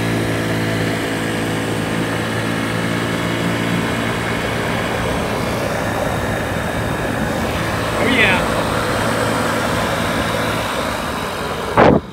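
Honda Ruckus 50 scooter's stock single-cylinder four-stroke engine running on an electronic fuel-injection kit, pulling along at a steady pitch under way with wind and road noise. The engine note fades away about ten seconds in.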